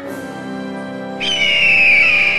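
Soft background music, then a little over a second in a loud, falling bird-of-prey screech: a cartoon eagle's cry.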